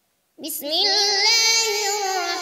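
A boy's voice reciting the Quran in melodic Arabic chant, beginning about half a second in with long held notes ornamented with wavering turns in pitch.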